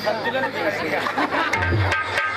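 Mixed voices and chatter through a stage sound system, with musical instruments under them and a deep hand-drum stroke about one and a half seconds in.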